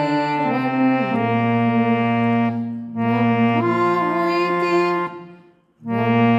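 Harmonium playing a slow bhajan melody in sustained reedy notes over a held lower note, changing notes several times. The sound dips briefly about three seconds in, dies away about five seconds in, and starts again right at the end.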